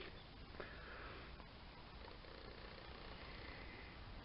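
Near silence: faint steady hiss, with a soft sniff close to the microphone about half a second to a second in.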